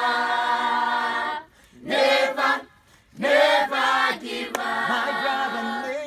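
A choir singing unaccompanied in long held notes, breaking off twice briefly between phrases.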